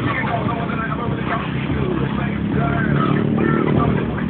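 A motor vehicle's engine running, getting louder over the last second or so.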